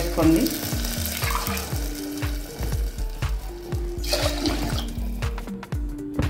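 Water poured from a steel tumbler into an aluminium pressure cooker of dal, a splashing pour in the first second or so and another about four seconds in, over background music.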